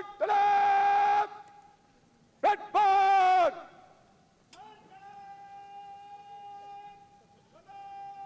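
Shouted, drawn-out parade words of command. Two loud long calls are held on one note, then two quieter, longer calls on the same note follow from about four and a half seconds in.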